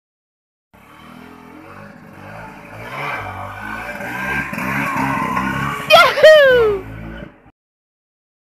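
Vespa scooter engine running and revving, growing louder as the scooter is lifted into a wheelie. Near the end a loud shout that falls in pitch rises over it, and then all sound cuts off suddenly.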